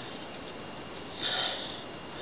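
A single short sniff, a little over a second in, against a faint steady hiss.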